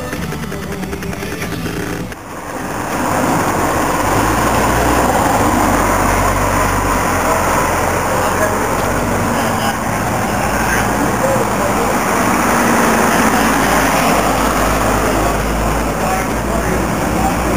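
Background music ends about two seconds in, then a loud steady rushing noise with a low rumble follows: vehicle and wind noise on the microphone while filming from a moving car.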